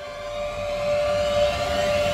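Dramatic background score: a held steady tone under a whooshing riser that climbs in pitch and grows louder, building toward a hit.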